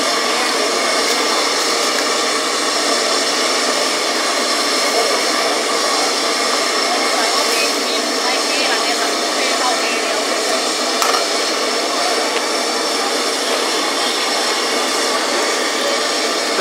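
Steady rushing noise of a hawker stall's high-pressure gas burner firing under a soup pot, unbroken throughout, with a faint click about eleven seconds in.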